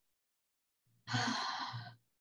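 A woman's audible sigh: one breathy exhale lasting just under a second, starting about a second in.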